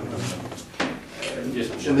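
A single sharp knock a little under a second in, amid men's speech in a small room.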